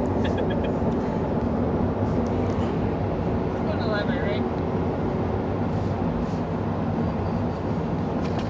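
Steady road and engine noise heard inside the cabin of a moving car.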